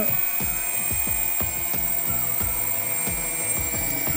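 Quadcopter's 2300 kV brushless motors, armed through the CC3D flight controller and ESCs, running under throttle with a steady high whine; the motors spinning up on command shows the new wiring works.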